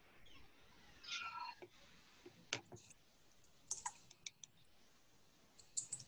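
Faint, scattered clicks, a few irregular taps over several seconds, with a brief faint voice about a second in.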